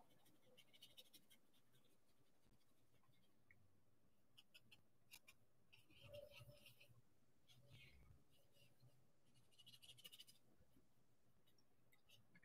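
Near silence, with faint, intermittent scratching of a paintbrush on heavy watercolour paper and a soft bump about halfway through.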